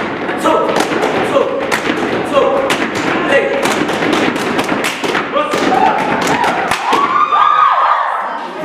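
Gumboot dancers slapping their rubber boots with their hands and stamping, a fast run of sharp slaps and thuds in rhythm. The strikes stop about seven seconds in.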